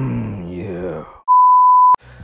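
A wavering, groaning voice from a cartoon clip for about a second, then a loud, steady, single-pitched test-pattern beep that sounds under the TV colour bars and cuts off abruptly just before the end.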